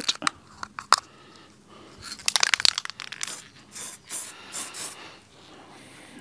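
Aerosol can of green spray paint: a few clicks and a quick rattle about two seconds in, then several short hisses of spray.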